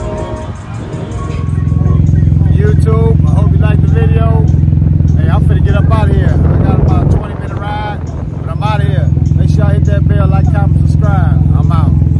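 A man talking over a loud, steady low rumble, which drops away for about a second and a half midway and then returns.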